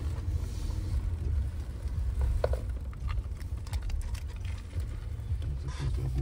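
Steady low rumble inside a car cabin, with faint clicks of someone chewing a sandwich.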